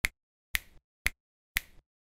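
Four finger snaps, evenly spaced about half a second apart, each a short sharp click, a steady count-in to a song's beat.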